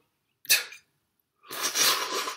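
A man's breathy mouth noises over a coffee mug as he spills a little: a short sharp one about half a second in, then about a second of hissing, sputtering breath near the end.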